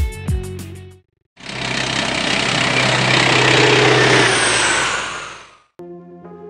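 Aircraft engine noise from old film: a loud roar with a low hum that swells over a few seconds and then fades away.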